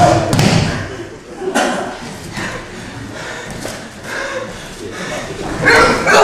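Bodies thudding onto floor mats during martial-arts throws and takedowns, with a loud impact at the start and another near the end, each with a shout.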